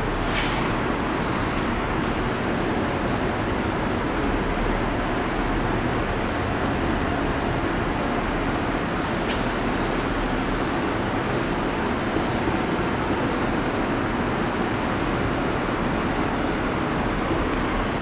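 A steady, even rushing background noise that runs without a break, with no speech over it.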